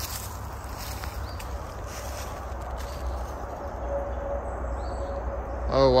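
Footsteps through grass and dry leaves, under a steady low rumble on the microphone.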